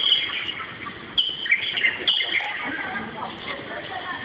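Birds chirping: a few short, high chirps near the start and about one and two seconds in, over faint background chatter.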